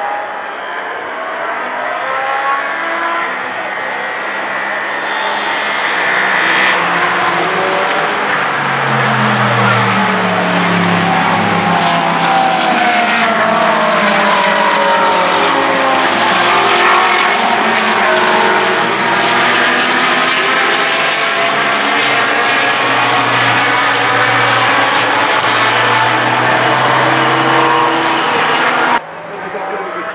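Several GT race cars passing at race speed, their engine notes rising and falling one after another and overlapping, loudest through the middle. The sound drops off abruptly near the end.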